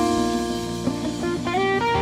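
Worship band music led by a guitar playing held melodic notes, with one note sliding upward about one and a half seconds in.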